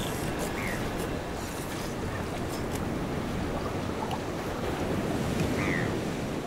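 Steady rushing noise of ocean surf and wind, with a couple of faint short chirps.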